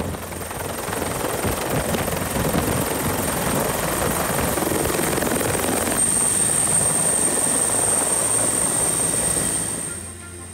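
Military helicopter running on the ground with its rotors turning: a steady, loud wash of rotor and engine noise with a thin high whine over it. The whine grows stronger about six seconds in, and the sound falls away just before the end.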